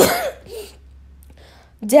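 A person clearing their throat once: a short burst right at the start, followed by a quiet pause.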